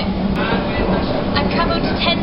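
Eurotunnel shuttle train running, heard from inside the car-carrying wagon: a steady low rumble with a steady hum.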